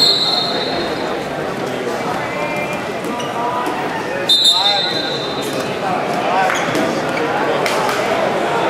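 A referee's whistle sounds twice, short steady blasts at the start and about four seconds in, the second stopping the wrestling as the two wrestlers reach the edge of the mat. Spectators shout and talk throughout in a large, echoing gym.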